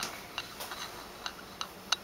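Light, irregular clicks and taps, a few a second, with the sharpest one near the end: handling and footstep noise from someone walking through rooms with a handheld camera.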